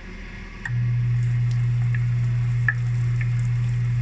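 A floured pork strip laid into hot oil in a frying pan; the frying starts about a second in and carries on steadily, with scattered pops, over a steady low hum.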